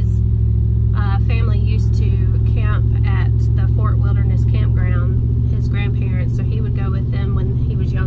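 A woman talking over the steady low drone of engine and road noise inside a moving pickup truck's cab.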